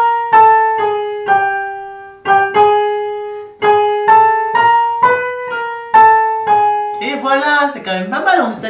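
Electronic keyboard in a piano sound playing single notes one after another, each struck and left to ring, stepping by semitones up and down a chromatic scale as a pitch-matching exercise.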